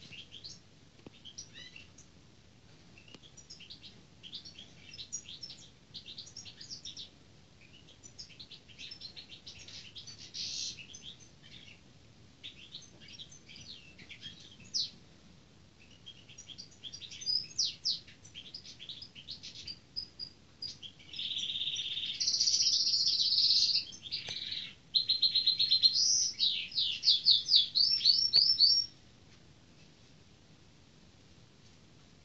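A small songbird singing a varied, twittering song of short high chirps. The song grows louder and fuller after about twenty seconds, ends in a fast run of rising notes, and stops abruptly near the end.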